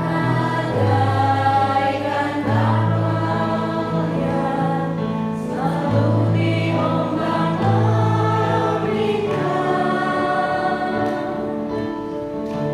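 A small mixed group of men and women singing an Indonesian Christian hymn together in unison, the phrases held and flowing without a break.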